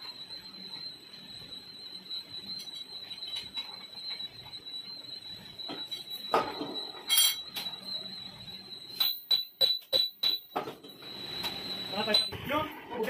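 Hammer blows on a steel oil expeller part held in a lathe's four-jaw chuck: a quick run of about seven sharp metallic knocks over a second and a half, three-quarters of the way in, with a couple of clanks earlier as the part is handled in the chuck. A thin, steady high whine runs underneath.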